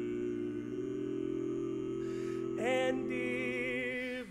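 Barbershop quartet of four men's voices singing a cappella, holding a sustained close-harmony chord without words. About two and a half seconds in, a higher voice slides up and sings over the chord with vibrato.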